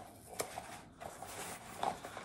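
Rustling and handling of a camping dish kit being pulled out of its mesh stuff sack, with a sharp click about half a second in and a few softer knocks of the plastic containers.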